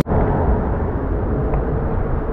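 Steady, irregular low rumble of wind buffeting an action camera's microphone, with a faint steady hum underneath.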